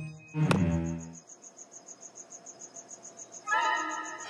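Cartoon soundtrack: a short musical sting rings out and dies away within the first second. A cricket then chirps quickly and evenly against near quiet. A brief pitched note comes in near the end.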